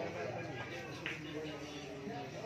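Indistinct men's voices chattering in a pool hall, with a faint click about a second in as a cue ball is struck.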